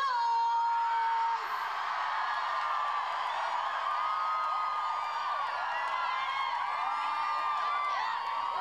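A high voice holds one long note for about a second and a half, then a concert crowd screams and cheers: many high voices overlapping.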